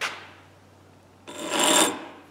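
A hand file scraping across the broken steel tip of a screwdriver clamped in a vise, being filed back into shape: a short scrape at the start, then one longer, louder stroke about a second and a half in.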